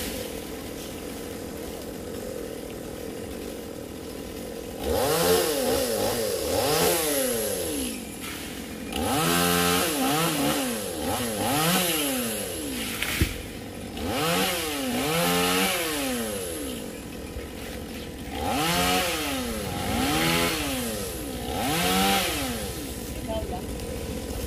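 Petrol chainsaw idling, then revved up and let back down again and again, in four groups of two or three revs each.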